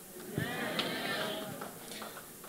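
A voice from the congregation calling out a drawn-out, wavering response, heard faint and distant, starting about half a second in and lasting about a second and a half.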